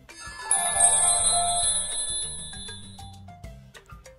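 Background music with a bright, bell-like chime sound effect that rings out about half a second in and fades away over the next two seconds.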